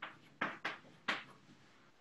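Chalk writing on a blackboard: about four short, scratchy strokes of the chalk within the first second or so, then quiet.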